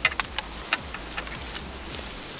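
Twigs and dry stalks crackling and snapping as someone pushes through thick brush on foot: about half a dozen small sharp cracks at uneven intervals over a steady low rumble.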